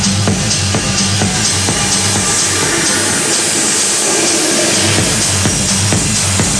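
Techno from a DJ set played loud, with a steady four-on-the-floor kick about two beats a second. About halfway through the kick drops out under a hissing noise sweep, and the kick comes back near the end.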